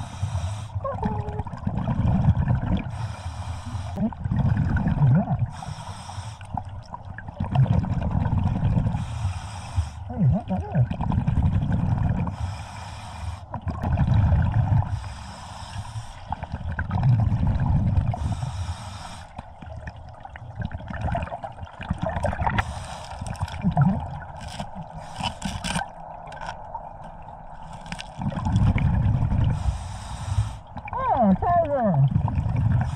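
Scuba diver breathing through a regulator underwater: short hissing inhalations alternate with longer rumbling bursts of exhaled bubbles, about one breath every three seconds.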